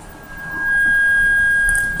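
Audio feedback: a single steady high-pitched whistle from a headset held close to the microphone, swelling up over the first second, holding level, then stopping.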